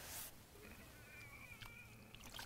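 Near silence, with a faint, thin high-pitched tone lasting about a second in the second half.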